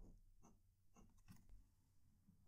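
Near silence, with a few faint scratches from a fine-nibbed fountain pen marking paper, then a fingertip rubbing across the wet ink line.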